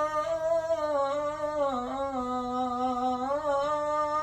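A man's solo unaccompanied voice chanting in the Arabic devotional style, holding one long drawn-out melismatic note that slides down in pitch around the middle and climbs back near the end.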